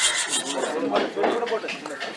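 Rapid, regular rasping strokes of a hand tool cutting wood, with people talking over them.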